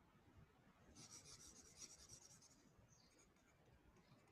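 Faint scratching of a stylus writing on a tablet screen, a quick run of short strokes from about a second in, lasting under two seconds, with very low room noise around it.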